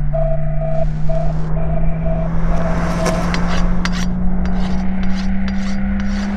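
Film-trailer sound design: a low steady drone that slowly rises in pitch, under a short tone repeating about twice a second that fades away. Rasping, scraping noise with sharp clicks swells in the middle.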